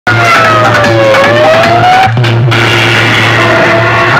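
Loud music blaring through a cluster of horn loudspeakers. A held, sliding tone dips and then climbs over the first two seconds, above a steady low hum.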